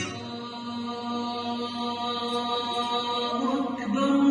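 Music with a voice chanting in long held notes, getting louder and moving to a new held note just before the end.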